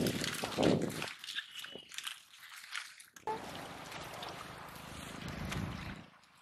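Water sloshing and splashing, with water hyacinth rustling as people wade in a weed-choked canal and pull at the plants. It is loudest in the first second, turns quieter and patchy, then becomes a steadier wash of noise after an abrupt change about three seconds in.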